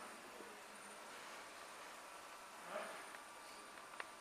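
Quiet background: a faint steady hiss of room tone, with one brief, faint unclear sound about three quarters of the way through.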